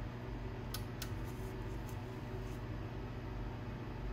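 Click of the push-button power switch on an HP E3614A DC power supply being switched on, about a second in, over a steady low hum.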